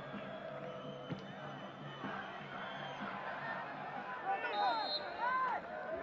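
Football stadium crowd hubbub, with a few voices calling out over it from about four seconds in.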